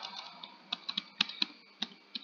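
Computer keyboard being typed on: about six separate keystrokes at an unhurried, uneven pace, starting a little under a second in.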